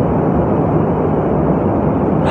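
Steady, fairly loud rumbling background noise with no pitch or rhythm, and no voice over it.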